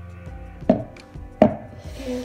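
A metal bundt pan full of cake batter knocked down twice onto a granite countertop, two sharp thuds less than a second apart, to knock the air bubbles out of the batter.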